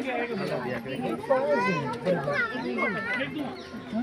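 Excited children's voices calling out and chattering over one another, a crowd of young visitors talking at once.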